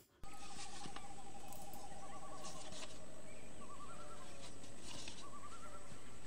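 Forest ambience from a film soundtrack: birds calling in repeated warbling trills over a steady background hiss. It starts abruptly just after the beginning.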